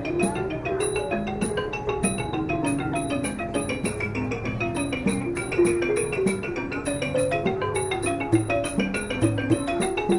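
Traditional Thai music led by a ranad (Thai xylophone) playing fast runs of struck wooden notes. A bright high tick marks the beat about twice a second, over occasional low thumps.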